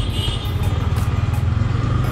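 Yamaha MT-15's single-cylinder engine running steadily at low revs while the motorcycle is ridden slowly in second gear, heard from the rider's position.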